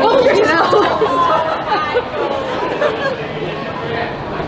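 Several women's voices talking and exclaiming over one another, excited and unintelligible, loudest in the first couple of seconds.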